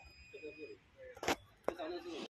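Faint voices, with a brief sharp knock just past a second in and a click shortly after; the loader's engine is not heard running.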